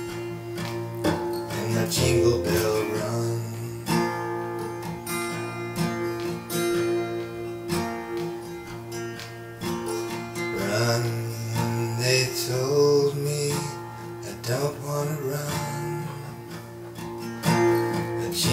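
Acoustic guitar being strummed, chords ringing on between repeated strokes.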